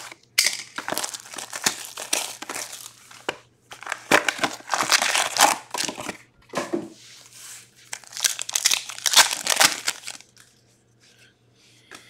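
Plastic wrap, cardboard and foil crinkling and tearing as a sealed trading-card box is cut open with a box cutter, its packs taken out, and a foil card pack torn open, in three spells of rustling.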